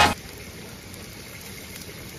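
Steady, even sizzling hiss of food cooking on a gas grill: potatoes and onions in a grill wok beside a coiled Italian sausage.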